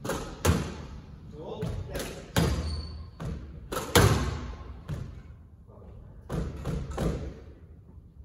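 Squash rally: a string of sharp knocks as the ball is struck by the rackets and strikes the walls and floor, echoing in the enclosed court, with a quieter gap about two-thirds of the way through.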